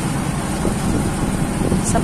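Steady engine and road noise of a small passenger vehicle, heard from inside its cabin.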